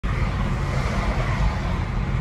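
Steady road and tyre noise with a low rumble inside the cabin of a moving Tesla Model 3 electric car, with no engine sound.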